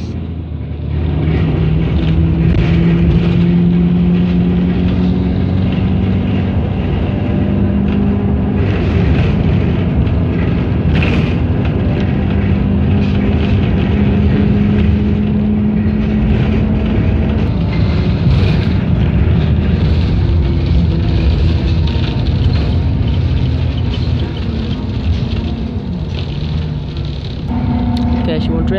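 Bus engine and road noise heard from inside the passenger cabin while under way: a steady low drone whose pitch steps up and down every few seconds as the bus changes speed, with a few short knocks over bumps.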